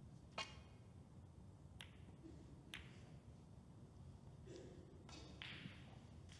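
A snooker cue strikes the cue ball with a sharp, ringing click. Two lighter clicks follow about a second and a half and two and a half seconds later as the balls meet, with a soft rustle near the end.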